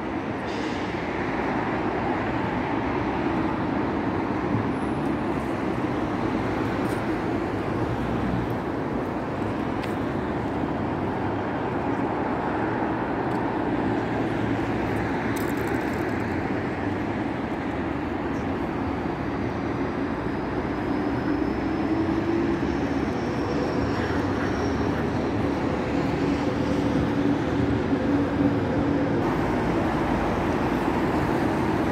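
Steady road traffic noise from a wide multi-lane city street: the continuous rush of passing cars, with a vehicle's engine hum joining in the last third.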